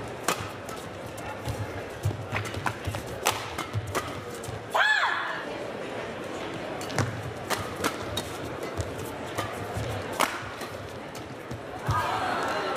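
Badminton racket strokes in a fast doubles rally: sharp cracks of the shuttlecock being struck, one every half second to a second. About five seconds in, a short squeal rises and falls in pitch. A second run of strokes follows over arena background sound.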